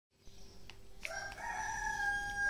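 A rooster crowing once: a long pitched call that starts about a second in, rises briefly and then holds steady, over a faint steady hum.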